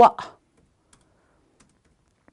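A woman's voice finishes a spoken word at the very start, then a quiet room with a few faint, short clicks, about one and a half seconds apart.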